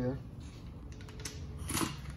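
Quiet workshop background with a few faint clicks of metal parts and tools being handled on a steel workbench, and a short rustle near the end.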